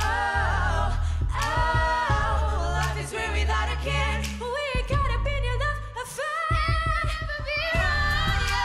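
Female lead vocalist singing a pop song live, her voice wavering in a vibrato, over a backing track with a strong bass line. A run of quick percussive hits comes near the end.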